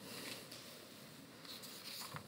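Faint, soft rustling of paper pages handled at a lectern, over quiet room tone.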